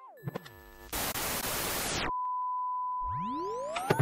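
Electronic transition sound effect: a short falling tone sweep, then about a second of loud hiss that cuts off suddenly, followed by a steady high beep and rising sweeps that climb into the start of speech.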